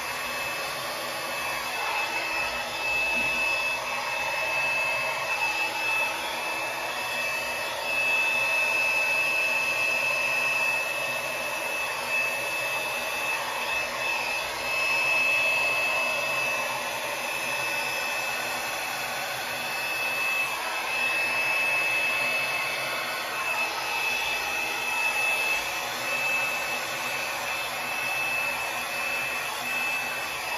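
Small handheld hair dryer running continuously with a steady high whine over its airflow noise, used to blow wet acrylic paint across a canvas; the level rises and falls slightly as it is moved.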